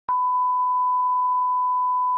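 Broadcast line-up test tone played over colour bars: one unbroken, steady 1 kHz beep that starts just after the beginning.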